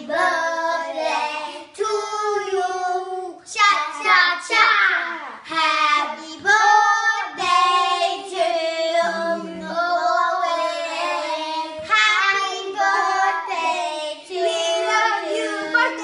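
Young children singing a song together, with long held notes.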